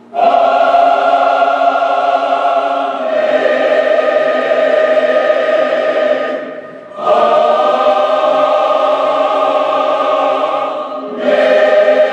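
Choir singing the hymn's closing 'Amén, amén' in long held chords, each lasting three to four seconds. There is a short break before a new chord about seven seconds in, and another near the end.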